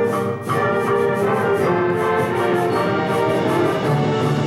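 High school symphonic band playing, brass and woodwinds holding full chords over a quick steady pulse, with a brief break about half a second in.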